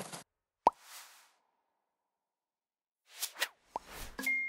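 Animated-title sound effects: a swish ending just after the start, a sharp pop about two-thirds of a second in, trailed by a brief whoosh, then a few quick swishes and another pop near the end.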